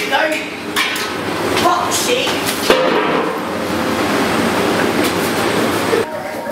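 Indistinct voices and movement, then a sharp click about three seconds in, followed by a loud, steady rushing hiss that cuts off abruptly.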